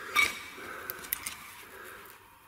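A few small, sharp clicks and light handling noise from hands working on a Honda CBX carburetor body, with a brief pitched squeak-like sound just after the start.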